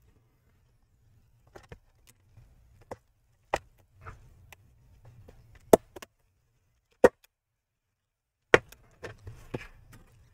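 Metal prying tool being worked along the seam of a laptop's plastic back cover, giving a series of sharp clicks and snaps as the cover's edge is levered: several small ticks, then four louder snaps spread a second or more apart.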